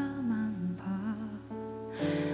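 Soft live ballad, quieter here between sung lines: a female voice's held note slides down and trails off over gentle band backing with guitar and keyboard, then a steady chord holds.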